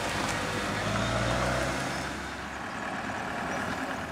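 A vehicle engine idling steadily, fading after about two seconds.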